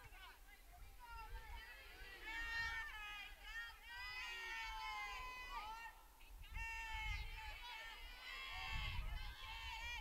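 Several distant high-pitched voices of softball players calling out and cheering across the field, overlapping throughout.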